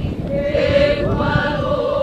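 Voices chanting together in a Hawaiian welcome chant, led by a woman holding long notes that waver in pitch near the end.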